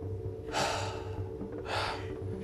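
A person's long, breathy sigh of pleasure, then a second, shorter breath about a second and a half in.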